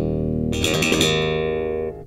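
Warwick Thumb bolt-on electric bass ringing out a closing chord, struck hard and bright about half a second in. The chord sustains, then is muted abruptly near the end.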